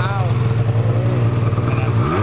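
A snowmobile engine idling steadily with a low, even hum, with voices faint over it.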